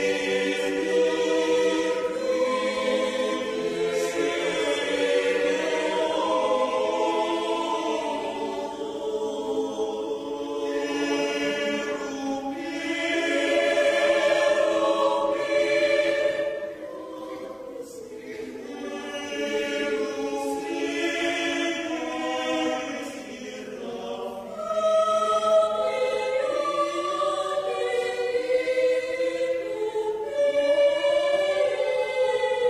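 Mixed choir of men's and women's voices singing together in parts. It drops softer a little past halfway and swells louder again in the last few seconds.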